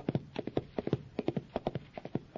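Hoofbeats of a horse galloping, a rapid run of sharp clip-clop strikes at about seven a second, as the racehorse comes down the stretch to the finish.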